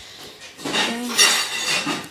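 Rustling and clattering handling noise close to a phone's microphone as the phone is picked up and moved about, loudest in the second half, with a brief bit of voice mixed in.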